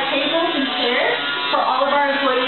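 A voice over background music.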